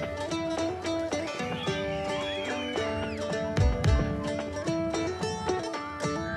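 Background music: a melody of held notes stepping up and down, with two deep bass hits near the middle.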